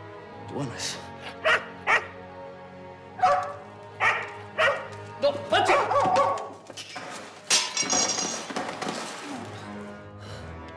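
A dog barking in a string of short sharp barks over film music, followed about seven and a half seconds in by a longer noisy crash.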